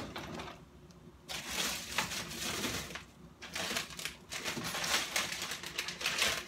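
Frozen packages and plastic bags rustling, crinkling and clacking as they are shifted around in a pull-out freezer drawer, in two stretches with a short lull about halfway.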